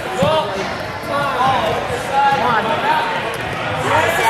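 Several voices shouting and calling in a large gymnasium, with a few dull thuds on the floor.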